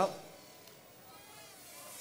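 Extreme Fliers Micro Drone 3.0 micro quadcopter's eight-millimetre motors spinning up for take-off: a faint buzzing whine that rises in pitch from about a second in and grows louder toward the end.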